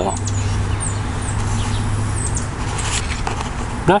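Outdoor ambience: a steady low hum with small birds chirping now and then.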